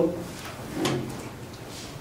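A single short thump about a second in, against quiet classroom room tone.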